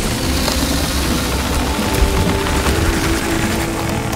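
A loud, steady rumbling sound effect with a deep low end, mixed with dramatic score whose held notes come in partway through; a single short hit lands about two seconds in.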